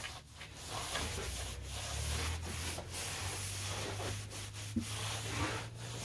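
A rag rubbing tung oil into a reclaimed American chestnut tabletop, a steady scuffing of cloth on wood over a low steady hum.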